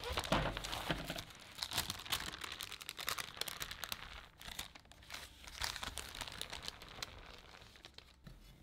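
Parchment paper crinkling and rustling as it is handled and peeled back from a baked chocolate sponge sheet. The crackles come irregularly and thin out in the second half.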